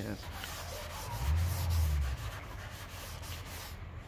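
Scotch-Brite pad scrubbing a wet, soapy plastic door panel in small circles with gritty bleach cleanser, a steady rubbing hiss as it works off sun-damaged plastic. A low hum comes in for about a second near the middle.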